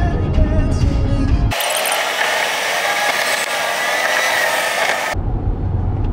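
Car cabin with the car stereo playing music over low road rumble. About a second and a half in it cuts abruptly to a high-pitched hiss with a wavering whine for several seconds, then cuts back to cabin road rumble.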